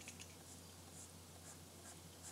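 Faint scratching of a stylus on a graphics tablet while sculpting strokes are made, over a steady low electrical hum.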